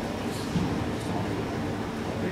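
Steady room noise of a venue: a low hum with a faint murmur of voices and a couple of faint clicks.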